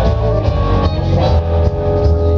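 Rock band playing live without singing: electric guitars holding notes over a heavy bass guitar line and a steady drum-kit beat with regular hits.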